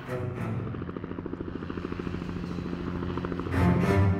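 Helicopter rotor chopping in a fast, steady beat over a held low music drone, swelling louder near the end.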